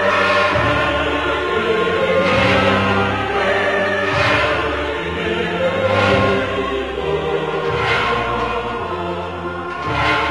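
Slow sacred choral music: a choir singing long held chords over a deep bass line that moves to a new note every second or so.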